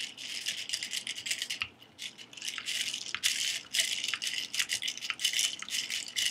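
Ice cubes rattling and clinking against a drinking glass as iced milk tea is stirred with a straw: a quick, continuous run of light clinks with a brief lull a little under two seconds in.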